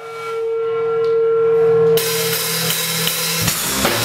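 A live rock band starting a song. A single held note swells for about two seconds, then the full band crashes in with a loud wash of cymbals, and the drum kit starts a steady beat about three and a half seconds in.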